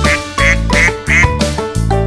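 A duck sound effect quacking about four times in quick succession, over bouncy children's-song accompaniment.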